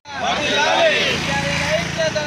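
A group of protesters chanting slogans together, several voices overlapping. The sound cuts in abruptly after a split-second gap at the start.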